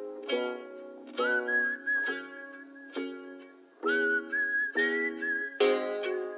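Background music: plucked-string chords struck about once a second, with a whistled melody gliding over them from about a second in.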